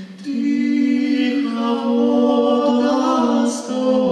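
A male vocal ensemble singing a Ukrainian folk carol a cappella in close harmony, in long held chords. There is a short breath just after the start, and another near the end before the next chord.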